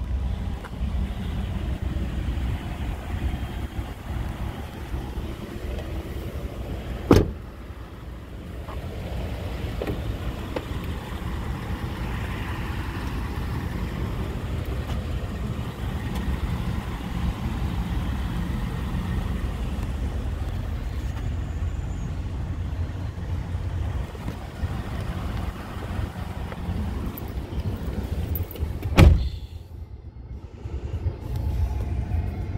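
2012 Ford F-150's engine idling, a steady low rumble heard from inside the cab. Two sharp thumps break through, about seven seconds in and again near the end.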